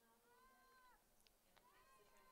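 Near silence, with two faint drawn-out voice-like calls, each lasting under a second: one near the start and one just before the end.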